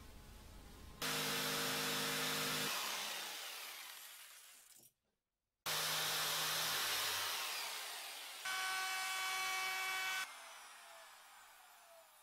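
Corded jigsaw cutting wood in three short bursts, roughing out a guitar fretboard blank; after each burst the motor winds down with a falling whine.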